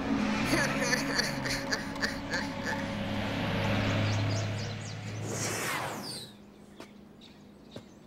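Cartoon soundtrack: a bus engine running under background music, with a low hum that swells toward the middle, then a falling whoosh about six seconds in, after which it goes quieter.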